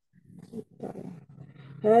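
Faint, muffled voice sounds come through the video call after a brief silence. Clear speech starts just before the end.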